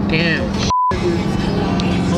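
Music playing under a voice, with a short, steady edited-in beep about three-quarters of a second in that blanks out all other sound for an instant, like a censor bleep over a word.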